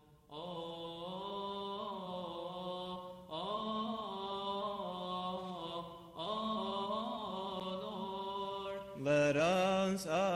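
A man chanting a Coptic liturgical melody solo in long, drawn-out notes, in phrases that break about every three seconds. The last phrase, from about nine seconds in, is louder and more ornamented, with a wavering line.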